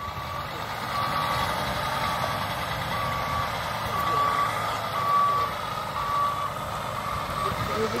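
A semi-truck's reversing alarm beeps steadily, about once a second, as the truck backs up. The truck's engine runs underneath.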